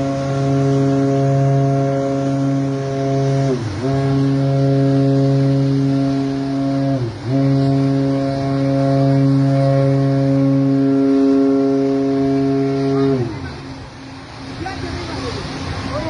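Container ship's horn sounding a long, deep, loud blast that breaks twice, its pitch sagging for a moment each time before it resumes. It then falls in pitch and stops about 13 seconds in.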